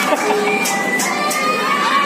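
A crowd of children's voices shouting and calling over one another in a busy indoor play area, with a few brief sharp ticks in the middle.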